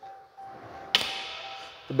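A single sharp, bright click about a second in, with a short ringing tail, from the doors of a Ram 1500 pickup being worked by hand, over a faint steady tone.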